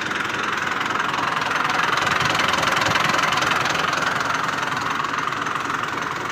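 Massey Ferguson 240 tractor's Perkins three-cylinder diesel engine idling with a steady diesel clatter, swelling slightly a couple of seconds in.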